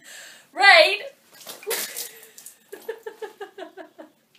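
A woman gives a loud, high squeal, then there is a short splash of water, and then a quick run of laughter.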